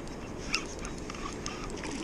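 Steady rush of river water, with a few light clicks.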